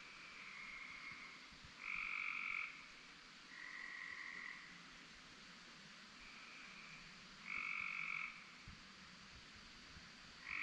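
Frogs calling at night: about five high-pitched calls in ten seconds, each lasting under a second, the two loudest about two seconds in and near the three-quarter mark, over a faint steady background chorus.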